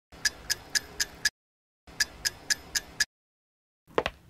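Clock-ticking sound effect: sharp, even ticks about four a second in short runs of about five, each run cut off into dead silence before the next. A single thump comes right at the end.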